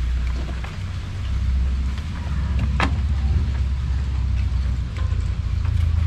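Gasoline squeezed from a plastic bottle trickling and spattering over a motorcycle brake caliper into a tray, over a steady low rumble, with one sharp click about three seconds in.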